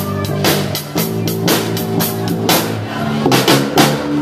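Live rock band playing an instrumental passage with no vocals: a drum kit keeping a steady beat with cymbal hits over electric bass and guitar.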